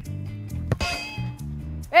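Background music with plucked guitar notes. About three-quarters of a second in comes a single sharp metallic clang that rings on briefly.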